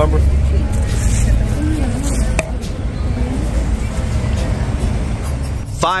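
Steady low rumble of street traffic passing close by, heaviest in the first couple of seconds, with faint music underneath. A man's voice comes in right at the end.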